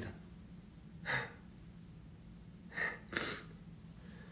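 A man's short, sharp breaths close to the microphone: one about a second in and two in quick succession near three seconds, over a faint steady low hum.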